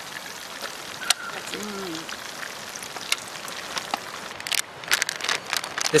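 Hot oil sizzling steadily in a cast-iron camp oven as battered fish deep-fries, with a couple of sharp clicks. More knocks and clicks come near the end.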